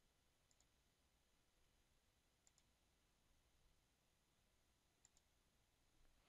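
Near silence broken by faint computer mouse clicks: three quick pairs of clicks, a couple of seconds apart, as links are drawn between nodes in the drainage software.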